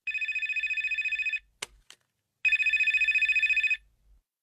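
Mobile phone ringing with a trilling ring: two rings of about a second each, with a pause of about a second between them. It is an incoming call.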